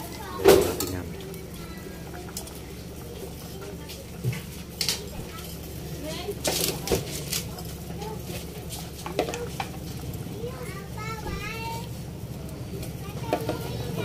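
Metal kitchen tongs clinking against a steel cooking pot as fried fish are set into the broth: a few sharp clinks, the loudest about half a second in, over a low steady hum.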